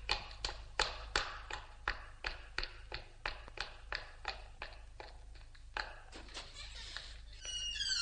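Brisk footsteps of hard-soled shoes on a concrete courtyard floor, about three steps a second, echoing off the high walls and fading as the walker moves away. Near the end, music comes in with a quick run of high rising notes.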